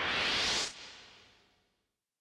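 Hot oil sizzling as breaded vegetable sticks deep-fry, a hissing noise that peaks early and fades away about a second and a half in.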